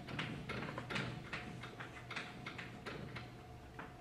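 Chalk on a blackboard: a quick, irregular run of short taps and scratches, about four or five a second, as a matrix is filled in with check marks.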